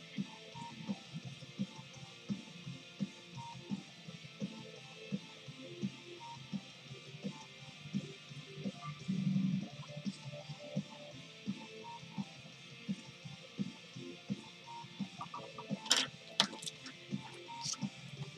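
Quiet background music with soft plucked guitar notes. Near the end there are a few sharp clicks or scratches.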